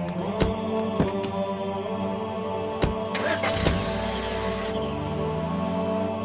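Background music of steady held tones, with a few sharp knocks over it in the first four seconds.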